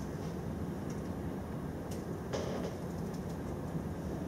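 Steady low room hum, with a few faint keyboard keystrokes as code is typed, and a short louder rustle a little over two seconds in.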